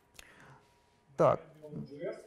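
Speech only: a faint breathy word early on, then a man asks "правильно?" about a second in, the loudest moment.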